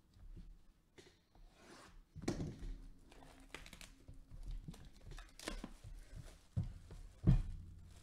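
Sealed cardboard hobby box of trading cards being handled and turned over by gloved hands: short bursts of crinkling and tearing of its wrapping. Near the end come two thumps, the second the loudest, as the box is set down on the table.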